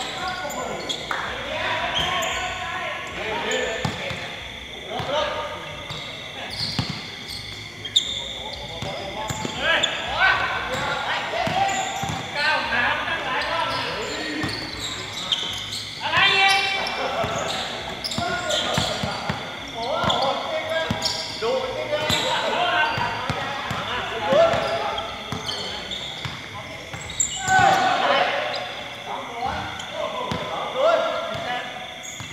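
Basketball being bounced and shot during a pickup game, the ball thudding on the hard court now and then, with players calling out and talking throughout.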